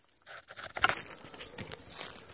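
Light clicks and scraping of an arrow being nocked onto a Bear bow, the sharpest click a little under a second in.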